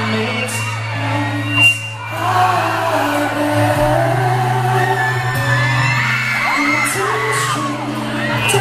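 Live pop ballad heard from the audience: a male singer over a backing track with steady, held bass notes, and high screams from fans in the crowd. A short, loud knock close to the recorder about two seconds in.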